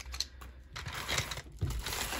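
Wooden coloured pencils clicking against each other as they are handled, then plastic bubble wrap crinkling from about a second in as the pencils are put back into it.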